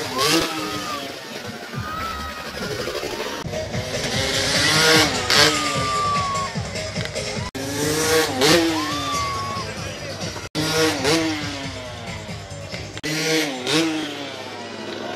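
Motocross bike engines revving in repeated rising and falling sweeps, broken by several sudden cuts.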